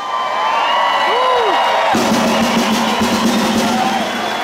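A concert crowd cheering and whooping as a drum solo ends. About halfway through, a steady low note from the stage sound system comes in and holds under the cheering.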